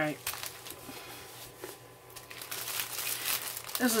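Plastic wrapping around a bundle of bagged diamond-painting drills crinkling as it is handled. The crinkling is faint at first and grows louder and denser in the second half.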